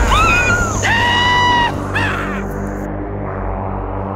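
Film soundtrack: a sudden loud hit, then three loud pitched cries. The first arches, the second is long and level, and the third is short and falling. All of it sits over a low, steady music drone that carries on alone after the cries.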